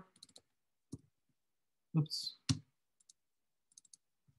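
Sparse, faint clicks of a computer mouse and keyboard while table cells are selected and edited, with a louder click about two and a half seconds in.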